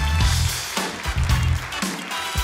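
Live house band playing upbeat rock music, electric guitar, bass and drum kit with a steady beat.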